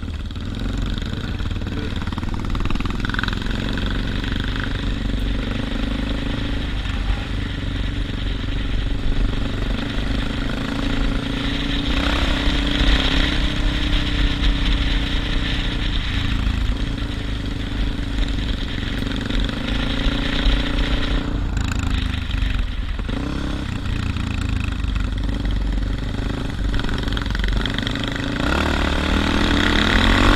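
Suzuki DR650's single-cylinder four-stroke engine running under way, its pitch rising and falling with the throttle and picking up near the end, heard through wind rush and rattle on a helmet-mounted microphone.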